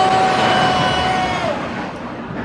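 Vekoma Boomerang coaster train rolling through the station with a steady high squeal that drops in pitch about a second and a half in, over the rumble of the train.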